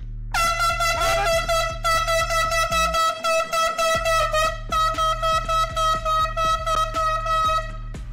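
A loud horn-like tone, held for about two seconds and then pulsing two to three times a second, stopping shortly before the end, over a steady background music bed.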